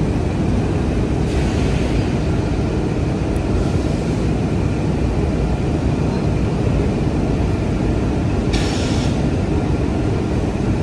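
A steady, loud low rumble of machinery running, with faint steady hum tones in it and short hissy bursts about a second and a half in and near the end.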